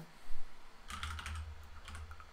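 Typing on a computer keyboard: a few quick keystrokes, a single one early and a short run of them around a second in.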